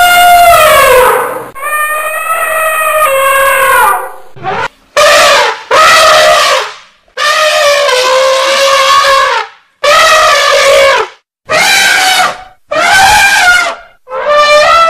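Elephant trumpeting: a run of about eight loud calls, each a second or two long, their pitch bending up and down, with short gaps between them.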